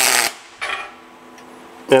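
Wire-feed (MIG-type) welding arc laying a tack weld, crackling loudly and cutting out about a quarter second in, then a second brief crackling tack of about a third of a second.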